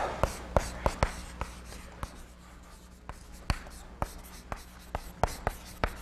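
Chalk writing on a blackboard: a string of irregular sharp taps and short scratches, a few each second, as the letters are formed.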